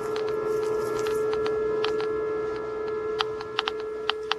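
Geiger counter clicking irregularly, its probe held over the ground to pick up lingering radioactivity; the clicks are scattered at first and come more often in the last second. A steady hum runs underneath.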